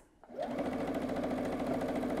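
Electric domestic sewing machine starting up about half a second in, then stitching at a steady, rapid pace along a marked diagonal line to sew a snowballed corner onto a fabric square.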